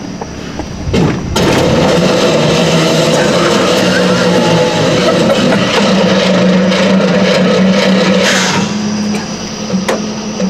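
Turbocharged truck engine held at high, steady revs for about seven seconds during a second-gear burnout attempt, heard from inside the cab, then dropping off near the end. The burnout is being tried in second because the 4L60E automatic transmission has already lost first gear.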